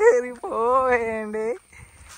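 Drawn-out vocal calls held on a steady pitch: a short one, then one held for about a second that breaks off about three-quarters of the way through.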